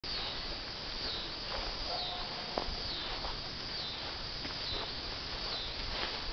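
Footsteps brushing through tall grass, under a steady outdoor hiss, with faint high chirps repeating in the background.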